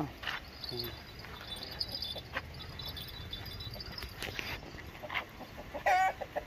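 Quiet livestock-yard background with faint, high, rapid chirping through the middle and a few soft scattered knocks. A brief, louder animal call comes right at the end.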